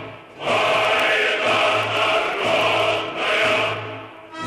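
A choir singing in long held phrases, with a brief break in the sound just after the start.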